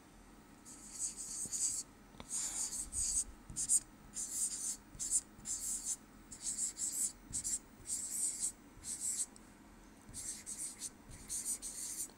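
Stylus scratching across a touchscreen display in a quick run of short handwriting strokes, each a faint, hissy scrape, with brief gaps between them and a pause of about a second near the end.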